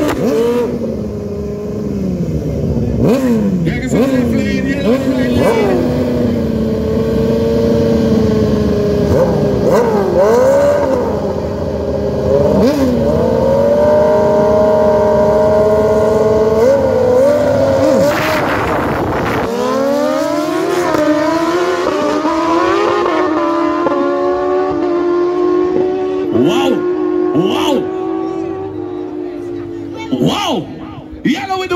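Two sport motorcycles revving at a drag strip start line, engines blipping up and down. About two-thirds of the way in they launch with a sharp burst of noise. The engines then climb in pitch through a run of gear changes as they pull away down the strip.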